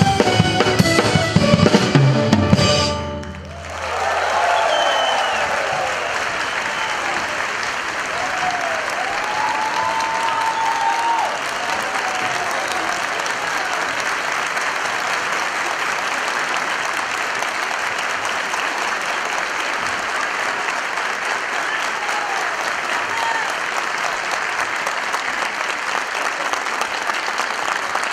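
A string orchestra ends its piece on a final chord about three seconds in. The audience then breaks into long, steady applause with cheers and whistles.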